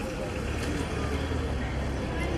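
Steady low rumble of outdoor street background noise, with faint voices.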